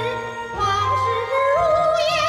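A woman singing a jingge, a Chinese song in Beijing-opera style, with wide vibrato over instrumental accompaniment.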